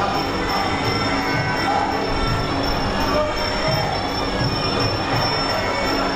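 Traditional Muay Thai fight music (sarama): a reedy pipe holding long wailing notes over a low drum beat.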